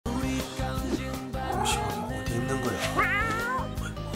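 Music with a cat meow sound effect, one wavering meow about three seconds in, as in a channel-logo intro sting.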